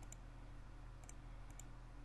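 Faint computer mouse clicks, a few quick clicks and two close pairs of clicks, over a low steady hum.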